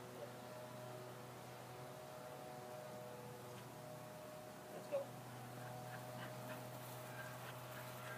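A steady low hum, with a single brief dog whimper about five seconds in.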